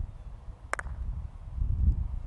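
A croquet mallet strikes a croquet ball once: a single sharp double click about three quarters of a second in. Low wind rumble on the microphone runs underneath.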